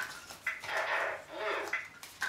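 Electronic auction unit of the eBay board game beeping about twice a second, with a longer voice-like sound effect swelling in the middle.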